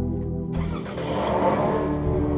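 A Toyota sedan's engine starting about half a second in and running, over steady background music.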